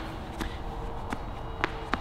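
A few light knocks and shuffling as a person shifts back on a padded incline weight bench and brings a hex dumbbell up into pressing position.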